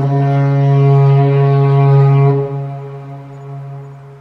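A deep, echoing horn-like tone at one steady pitch. It starts suddenly, holds loud for about two seconds, then dies away over the next two.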